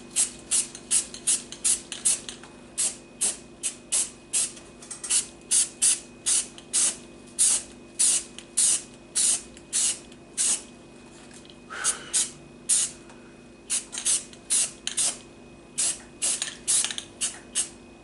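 Aerosol spray paint can hissing in many short bursts, about two to three a second with a couple of brief pauses, laying on a light dusting coat.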